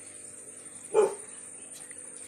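A single short dog bark about a second in, over a steady faint high-pitched trill.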